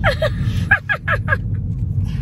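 Laughter in about five short bursts, each falling in pitch, dying away about one and a half seconds in, over the steady low rumble of a car driving, heard inside the cabin.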